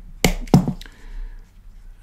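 A brass press-stud snap on a small leather knife sheath being pressed shut: two sharp clicks about a third of a second apart, a quarter of a second in, then quieter handling of the leather.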